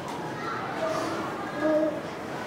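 A child answering a question in a soft, faint voice, with low chatter from other children in the classroom.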